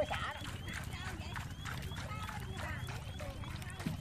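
A steady low motor hum under faint background voices, with a quick, evenly repeating high chirp about three times a second and scattered small clicks.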